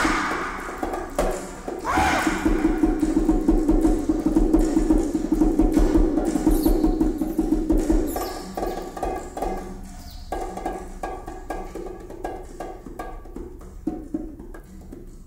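Percussion music: rapid hand-drum and wood-block strikes over a held low tone, with two rising swooping calls in the first two seconds. The track turns softer and sparser after about eight seconds.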